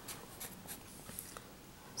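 Faint strokes of a felt-tip Sharpie marker writing on paper, mostly in the first half.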